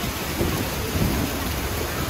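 Wind buffeting the microphone on the open deck of a tour boat, a low gusty rumble over a steady rush of wind and water.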